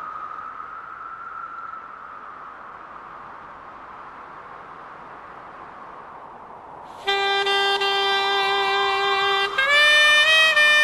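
A steady hiss, then about seven seconds in a loud held note on a brass instrument, which steps up to a higher note near the end: the opening of a piece of background music.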